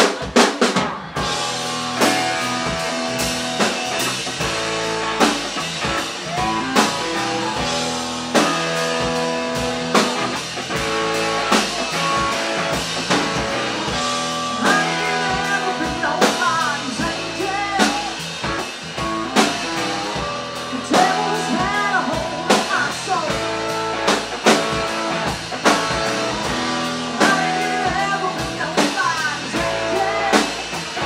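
Live band playing a song on drum kit, acoustic and electric guitars and bass guitar. A woman's lead vocal comes in about halfway through.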